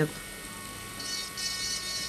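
Brushless electric manicure drill spinning a thin bur against the cuticle at the nail base, a steady whine. About a second in, a higher whine joins it as the bur works the skin and nail.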